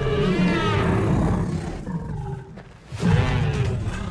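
A film dragon roaring: a long, growling call with a wavering pitch over the first second and a half, then a second, lower growl starting about three seconds in, over music.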